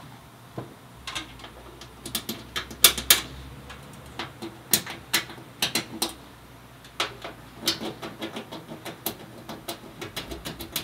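End of a rivet scratching and tapping on the steel van wall behind a bracer, marking the spots behind PEM nuts that are to be drilled out. It comes as a string of irregular sharp clicks and short scrapes, loudest about three seconds in.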